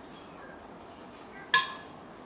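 A single sharp, ringing clink of a metal spoon set down against a dish, about a second and a half in, over quiet room tone.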